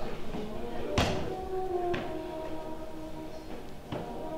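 Music with held, steady tones, broken by a sharp thud about a second in and fainter knocks near two seconds and just before the end.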